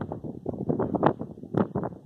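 Wind buffeting a phone's microphone in short, uneven gusts.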